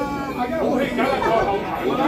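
People talking, overlapping chatter, with a steady low hum underneath.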